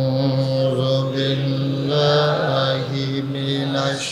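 A man's voice chanting a melodic religious recitation through a microphone and loudspeaker. He sings long held notes that step up and down in pitch a few times, rather than speaking.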